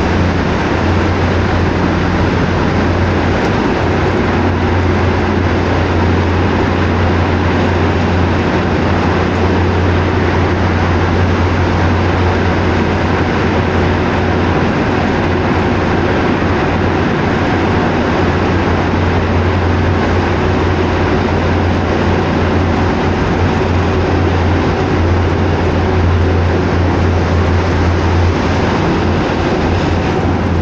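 Steady drone of a truck's engine and road noise heard from inside the cab while cruising at highway speed, with a strong low hum underneath.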